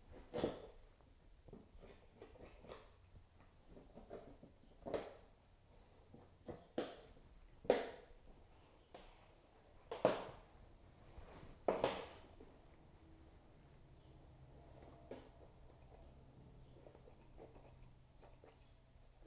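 Metal scissors snipping meat and tendon off a pheasant's wing bones: about six sharp snips at irregular intervals over the first twelve seconds, with fainter clicks between, then only faint handling sounds.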